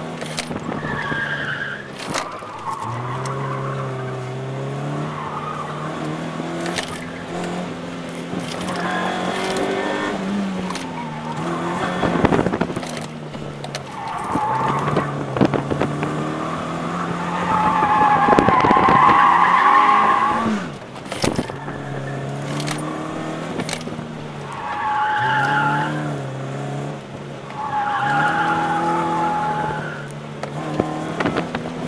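Inside the cabin, a SOHC car engine revs up and down through an autocross course, with the tires squealing through the corners. The longest squeal comes about two-thirds of the way through, and two shorter ones come near the end.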